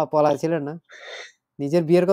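A man speaking, with a short audible intake of breath about a second in before he carries on talking.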